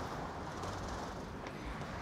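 Low, steady hum of distant city traffic.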